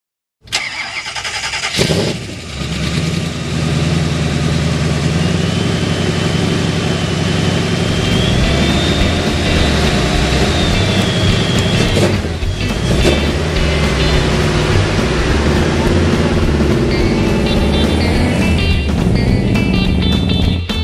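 A vehicle engine starting with a sudden loud burst and then running steadily, mixed with music.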